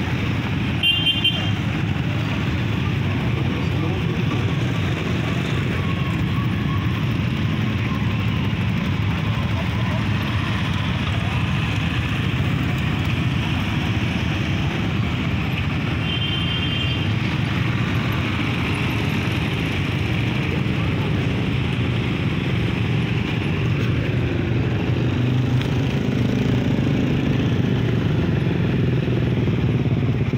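Crowd of people talking and calling out over motorcycle engines idling and passing, a steady street din. Two brief high beeps stand out, about a second in and about halfway through.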